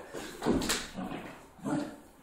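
A person imitating a dog: a few short dog-like vocal sounds, a pair about half a second in and one more near the end.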